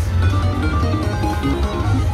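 Dragon Link Golden Gong slot machine playing a quick melody of short plucked-string notes as the reels spin and land on a small win, over a steady low hum.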